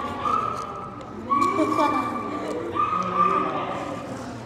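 A dog whining: three high, drawn-out whines of about a second each, over voices in the room.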